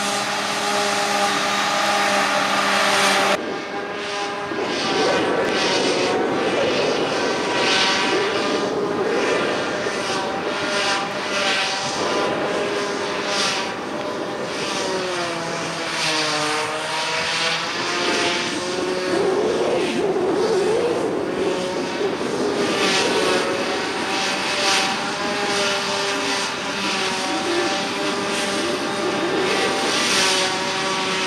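Claas Jaguar 840 forage harvester working under load while picking up and chopping grass, its engine and cutterhead a steady drone with several engine tones, mixed with a Massey Ferguson tractor running alongside. The sound changes abruptly about 3 seconds in, and the engine pitch sags and recovers around the middle.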